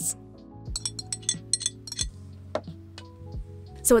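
Metal whisk clinking against a ceramic mixing bowl as powdery bath bomb mixture is stirred: a quick run of light clinks about a second in, then a few single ones, over background music.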